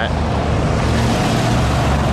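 Steady city street noise with a constant low rumble: road traffic going by.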